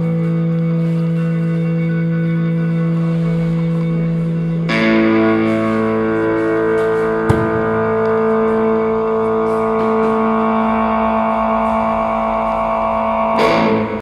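Background music of sustained, effects-laden guitar chords, with the chord changing about five seconds in and a single sharp click about halfway through; the music stops at the very end.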